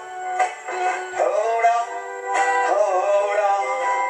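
A man singing a reggae song over a strummed guitar. The sound is thin, with almost no bass.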